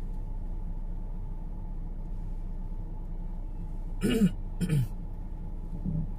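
Steady low road and engine rumble inside a car's cabin, then a person coughs twice about four seconds in.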